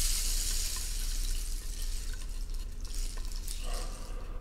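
A steady rushing hiss, heaviest in the treble, slowly fading out, with faint brief tones near the end.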